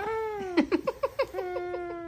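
Infant with a tracheostomy vocalizing: a long falling note, then a quick run of about eight short pulses, then a steady held note.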